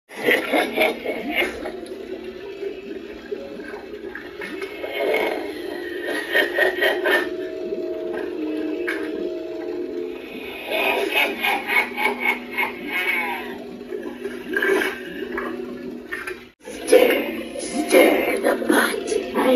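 Cauldron Creep animatronic running its soundtrack through its built-in speaker: a voice speaking in bursts over droning music and gurgling, water-like sound effects. The sound briefly cuts out near the end and then starts again.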